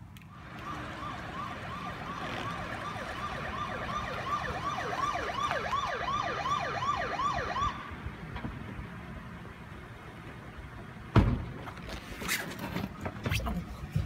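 A police siren wails in quick, repeating rising-and-falling sweeps. The sweeps grow deeper before the siren stops about eight seconds in. A few seconds later there is a single sharp thud.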